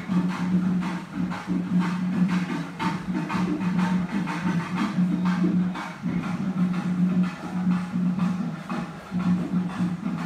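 Festival procession music: repeated drum strokes over a low held tone that breaks off and resumes every second or so.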